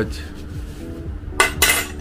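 White ceramic bowls clinking against each other as they are picked up from a stack: a few sharp clinks about one and a half seconds in.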